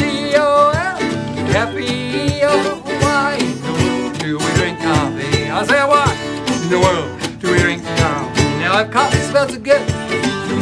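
Ukulele and acoustic guitar strummed in a steady, bouncy country-style rhythm, with a man singing the melody over them.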